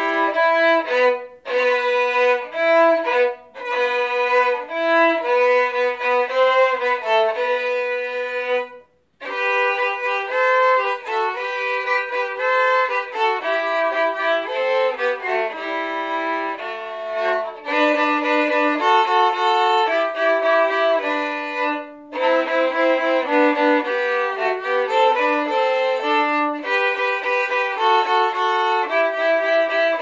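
Two violins playing a duet, one line above the other, with short pauses between phrases and a brief full stop about nine seconds in.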